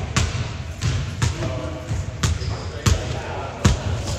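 Basketballs bouncing on a hardwood gym floor: about six irregular thumps, with faint voices between them.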